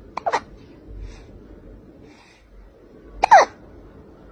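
A tabby kitten giving two short, high calls that fall in pitch, one just after the start and a louder one about three seconds later.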